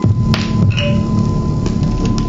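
Free-improvised music for double bass and live electronics: a dense low rumbling noise sets in suddenly over a steady high tone, with scattered clicks and a couple of short chirps.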